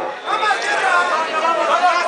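Crowd chatter: several voices talking at once, close by.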